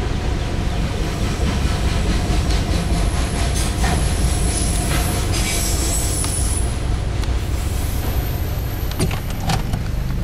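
Freight train of autorack cars rolling past at close range: a steady rumble of steel wheels on rail, with high wheel squeal in the middle and two sharp clacks near the end.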